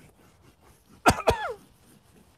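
A man's voice gives two short, loud bursts about a second in, each gliding down in pitch, over faint scratching of chalk being scribbled on a blackboard.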